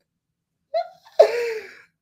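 A person sneezing once: a short catch of breath, then the sneeze itself just past a second in, sudden and loud, trailing off quickly.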